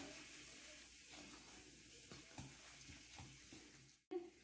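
Near silence: faint, soft handling noises with a few light ticks as raw beef steaks are turned over by hand in a plastic bowl.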